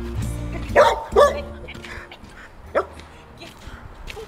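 An excited dog barking three times: two sharp barks close together about a second in and one more near three seconds. Background music fades out during the first second.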